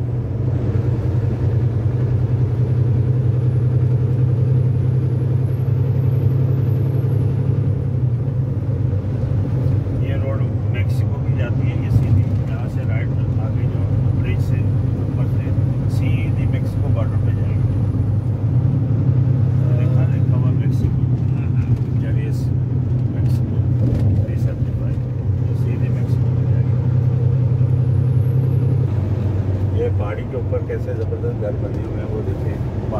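Steady low drone of a heavy truck's engine and road noise, heard from inside the cab while cruising on a highway.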